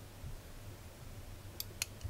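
Two short, sharp clicks close together near the end, from a small switch on a homemade 5 V USB electronic load being flipped to bring on another row of bulbs, over a faint low hum.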